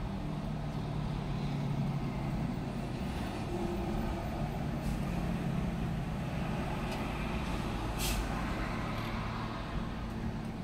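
Steady low rumble of a motor vehicle engine running, heard from inside a car's cabin, with a short sharp hiss about eight seconds in.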